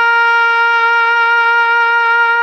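A trumpet holding one long, steady note.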